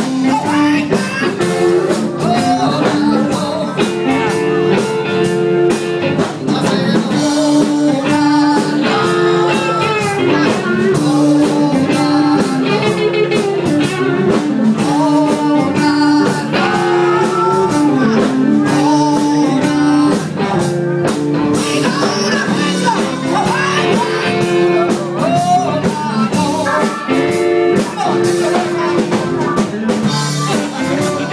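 A live blues band playing: a woman singing over electric guitars, keyboard and harmonica.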